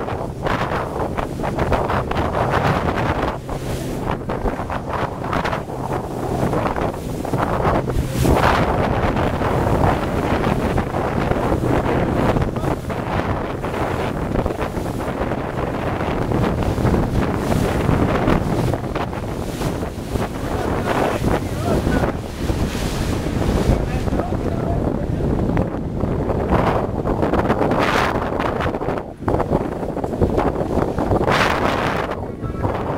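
Wind buffeting the microphone in gusts over the splash of choppy sea against a small boat's hull. A low steady hum from the boat's motor runs under it and fades out about two-thirds of the way through.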